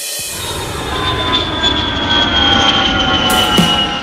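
Jet airliner passing by: a building rush of engine noise with high whining tones that slowly fall in pitch.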